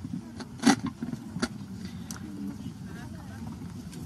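Low background murmur of distant voices over a steady low hum, broken by a few sharp clicks and knocks in the first two seconds.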